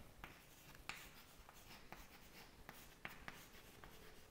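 Chalk writing on a chalkboard: faint, irregular taps and short scratches of the chalk stick as words are written, the sharpest tap about a second in.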